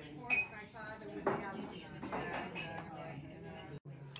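Cutlery and plates clinking in a restaurant dining room, with people talking in the background; the sharpest clink comes about a third of a second in. The sound drops out briefly near the end.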